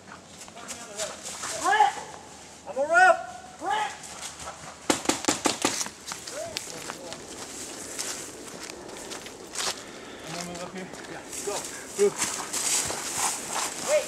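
Loud shouted calls, then a rapid burst of about eight paintball marker shots about five seconds in, with more scattered shots near the end.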